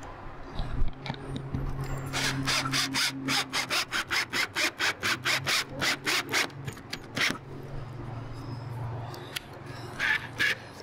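Ryobi 18V cordless drill driving a screw into an antenna mount base, the motor running with a steady hum. Through the middle it gives a regular clicking, about four clicks a second, which stops about seven seconds in.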